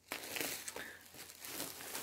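Thin plastic bag crinkling and rustling as it is handled and lifted, a string of small irregular crackles.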